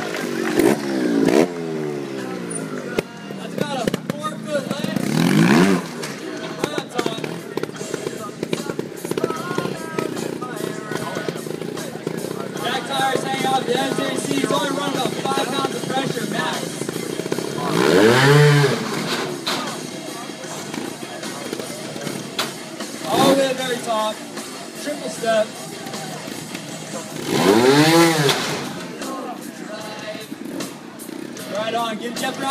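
Trials motorcycle engine blipped in short revs, each climbing and falling back in pitch, with the strongest bursts about 18 and 28 seconds in, as the bike is hopped and balanced up onto a high platform. Background music plays throughout.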